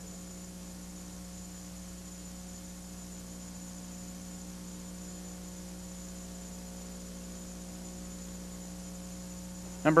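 Steady electrical hum, a low tone with overtones and a faint high whine above it.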